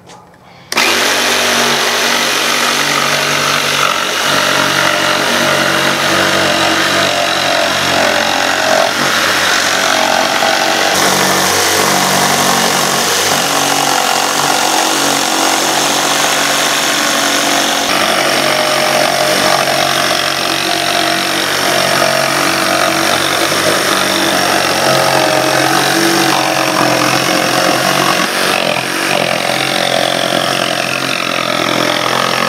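Ryobi battery-powered jigsaw cutting through plywood along a curved line. It starts abruptly about a second in and then runs steadily.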